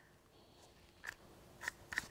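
Faint room quiet broken by a few small plastic clicks, one at the start and three in the last second, from a handheld paint thickness gauge being handled on and off the primed roof.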